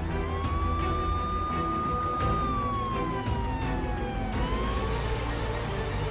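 A siren wailing: its pitch rises, holds, falls slowly, then starts rising again near the end, over background music and a steady low vehicle rumble.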